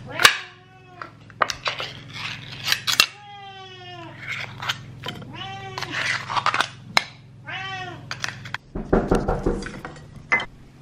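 Hungry cats meowing repeatedly for their food, one long drawn-out meow among several shorter ones, while a spoon clinks and scrapes as wet food is scooped from a can into a metal bowl. A brief bout of rustling and knocks comes near the end.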